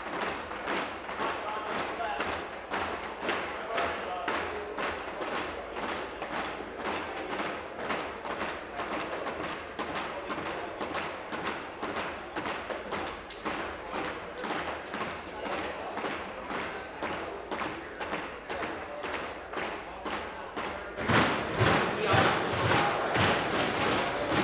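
Legislative division bell ringing in evenly repeated strokes to call the members in for a recorded vote, with a murmur of voices in the chamber. It grows louder about three seconds before the end.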